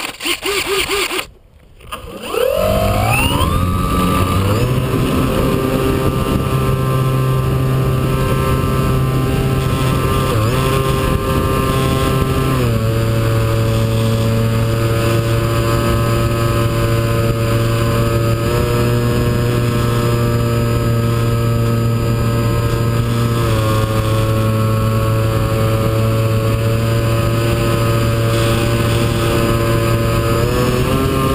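A model plane's motor and propeller, heard from a camera mounted on the plane: after a couple of seconds of handling knocks it spins up with a rising whine, then runs as a steady, loud drone in flight. Its pitch steps twice, about a third and two-thirds of the way through, as the throttle changes.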